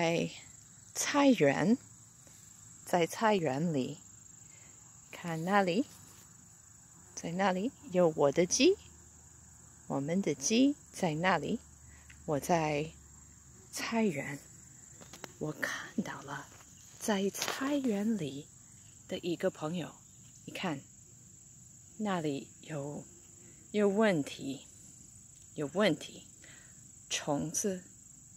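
A person speaking slowly in short phrases with pauses, over a continuous high-pitched insect trill, as of crickets.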